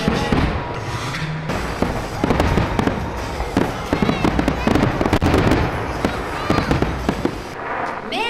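Aerial fireworks display: shells bursting overhead in quick succession, a dense run of bangs and crackles over a low rumble.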